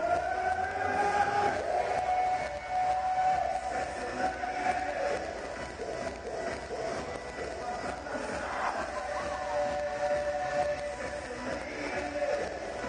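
Two kendo fencers' long, drawn-out kiai shouts as they face off in guard: one held for about four seconds, then a lower-pitched one for about four seconds, over the murmur of a large hall.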